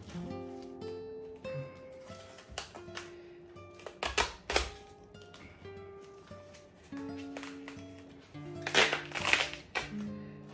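Background music of plucked-string notes, with short crinkles of a duct-taped packet being handled about four seconds in and again, louder, near the end.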